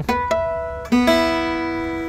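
Oval-hole Selmer-Maccaferri-style gypsy jazz guitar picked with a plectrum: a couple of quick notes, then a chord about a second in that rings out and slowly fades. The guitar is a little out of tune.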